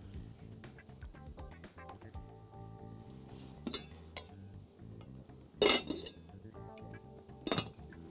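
A serving spoon clinking against a ceramic plate three times, the loudest a little past halfway, over soft background music.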